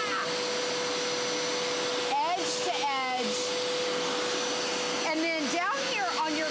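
Hoover Power Scrub Elite carpet cleaner's motor running steadily under a handheld upholstery tool, a constant rushing noise with a steady hum-tone running through it.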